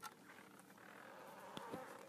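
Near silence: faint room noise with a soft buzz that swells slightly in the second second, and a couple of light clicks, one at the start and one about one and a half seconds in.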